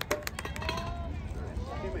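Voices calling out at a distance over a steady low rumble, with several sharp clicks in the first half second.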